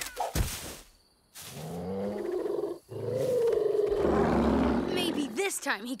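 A cartoon dinosaur growling and roaring, ending in a long falling call over a low rumble, with a sharp hit just after the start.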